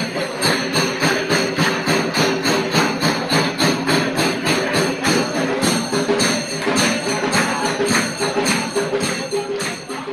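Temple aarti music: fast, even strokes of jingling metal percussion such as cymbals and bells, about four to five a second, over a held tone. It fades near the end.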